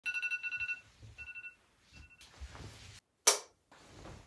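Electronic beeping: a fast run of high pulsed tones in the first second, then two shorter bursts of the same tone. Near the end comes a short, loud rush of noise.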